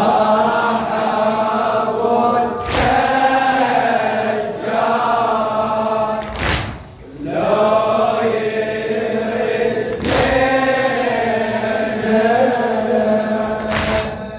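A man's voice chanting a Shia latmiya (Husseini mourning elegy) in Arabic through a microphone, in long-held notes with a wavering, ornamented melody. A short, sharp sound cuts in about every three and a half seconds.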